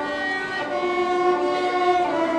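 A group of violins playing together in long held notes, moving to a new sustained chord about two-thirds of a second in.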